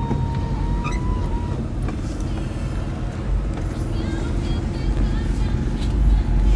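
Steady low rumble of a car heard from inside the cabin, with a thin steady tone that stops about a second and a half in.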